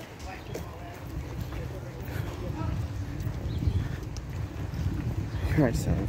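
Low, uneven rumble of wind buffeting a handheld phone's microphone outdoors, with faint voices in the background and a short voice sound near the end.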